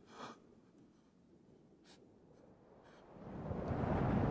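Quiet radio-drama sound effects: a soft scuff just after the start and a couple of faint clicks, then a low noise that swells up over the last second.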